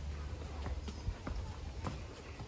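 Footsteps on a paved path at an ordinary walking pace, a run of light taps a few tenths of a second apart, over a low steady rumble.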